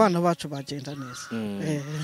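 A woman's voice drawing out sung 'ba ba' syllables in long held notes.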